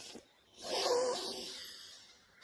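A soft, breathy vocal sound with a faint wavering pitch, lasting about a second.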